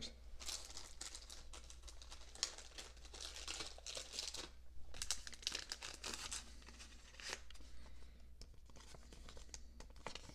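Faint, irregular crinkling and rustling of thin plastic card sleeves being handled, with small crackles throughout and one sharper click about two and a half seconds in.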